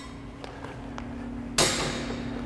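A light strike lands about one and a half seconds in: one short, sharp, noisy hit that fades quickly, with a few faint clicks of handled weapons before it. A steady low hum runs underneath.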